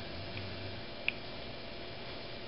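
Quiet room tone, a steady hiss with two faint ticks, the clearer one just after a second in.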